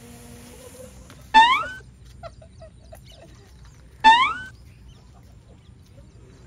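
A bird gives two loud calls about three seconds apart, each brief and sliding upward in pitch.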